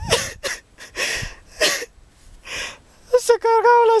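A man's voice: several short, breathy gasps for air, then about three seconds in a long, high, drawn-out vocal note as he starts a word.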